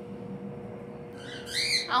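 A short bird call that arches up and down in pitch, heard once near the end, over a faint steady hum.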